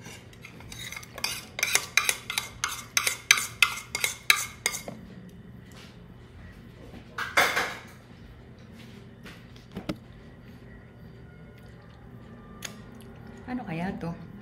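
A utensil knocking and scraping against a plastic tub of rice while seasoned rice and ground meat are mixed together. It starts with a quick run of about a dozen knocks, roughly three a second, then one longer scrape, then a few scattered taps.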